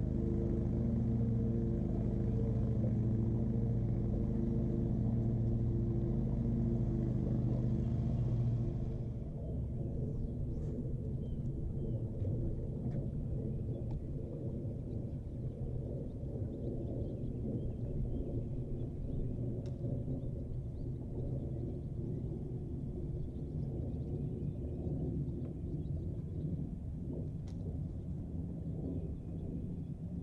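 A boat motor running with a steady hum for about nine seconds, then cutting off abruptly. A rougher low rumble with a few faint clicks follows.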